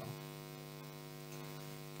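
Steady electrical hum, a low buzz with many overtones that stays level throughout: mains hum picked up in the narration recording.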